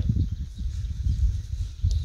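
Uneven low rumble of wind buffeting the microphone outdoors, with no other clear sound.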